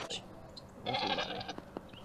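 A young goat bleats once, a short wavering call about a second in.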